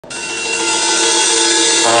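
Two trombones playing held notes together, growing louder over the first half second, then moving to a new chord with a lower note just before the end.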